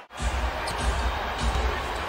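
Basketball being dribbled on a hardwood court: a steady run of low bounces, about two or three a second, over arena background noise.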